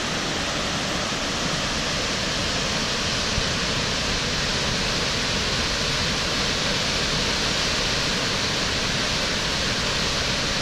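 Pencil Pine Falls: the waterfall's steady, loud rush of falling water.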